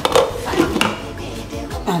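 A glass pot lid clinking against the rim of a metal cooking pot as it is lifted: a couple of sharp clinks near the start and again just under a second in, over background music.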